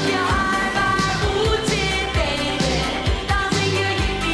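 A pop song playing: a singer's voice over a steady beat with bass and drums.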